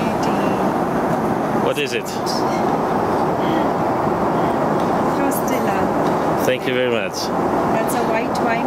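Steady rushing cabin noise of a Boeing 777-300ER in cruise, with brief snatches of voice about two seconds in and again near seven seconds.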